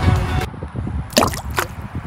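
Background music breaks off about half a second in, followed by two quick water-drop 'bloop' sound effects about half a second apart.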